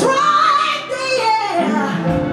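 A woman singing live into a microphone over band accompaniment: a held note that bends in pitch, a brief break just before a second in, then a new sung phrase.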